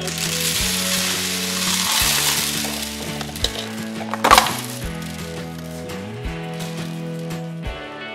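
Green plastic beads poured out of a plastic cup onto a table, a dense rattling cascade for the first three seconds or so, with a sharper clatter about four seconds in. Background music with a steady bass beat plays underneath.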